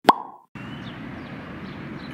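A short pop sound effect: a sharp click with a brief tone that dies away within about half a second. After it comes a steady background hiss of open-air ambience.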